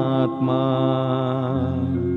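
A male voice sings a Sanskrit devotional verse in a slow, chant-like melody over a steady sustained drone accompaniment. The voice bends in pitch at first, then holds one long wavering note. About a second and a half in, the voice fades out and the drone and held accompaniment tones carry on.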